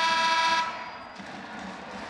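Basketball arena horn sounding one steady, flat tone that cuts off suddenly about half a second in, leaving low arena noise.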